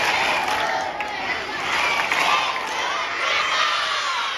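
A crowd of schoolchildren cheering and shouting together, many voices at once.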